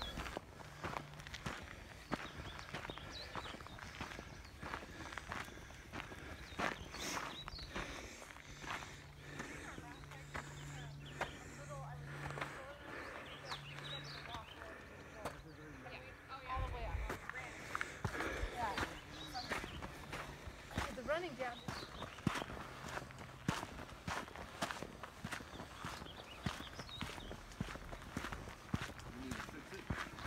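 Footsteps on a dirt and gravel trail at a steady walking pace, with voices in the background.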